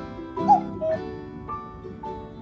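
Light plucked-string background music with a short high whimper from a Yorkshire terrier puppy about half a second in, the loudest sound here, followed by a shorter second whine.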